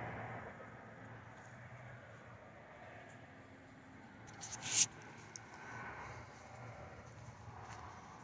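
Faint outdoor background, with one short, sharp noise a little past halfway through.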